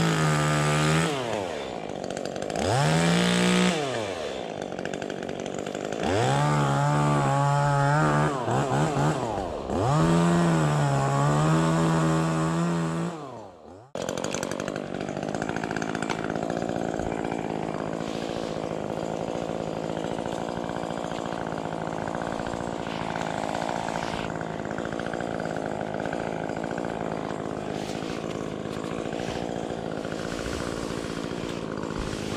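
Chainsaw revving up and down about four times while cutting branches, its pitch rising and falling with each pull of the throttle. It cuts off abruptly about halfway through, followed by a steady, even engine drone.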